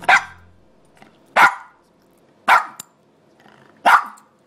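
A dog barking four times, about a second apart.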